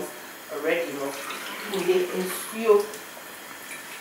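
A woman's voice repeating "come up, come up" in a sing-song chant, over a steady faint rushing noise.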